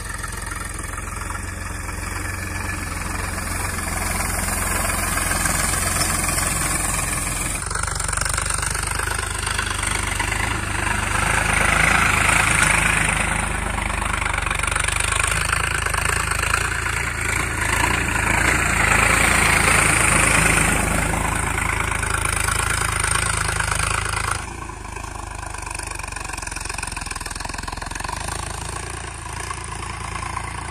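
Sonalika DI 42 RX 42 hp diesel tractor engine running steadily as the tractor drives over spread paddy straw to thresh it. A louder hissing noise rides over the engine through the middle part, then the sound drops abruptly about 24 seconds in.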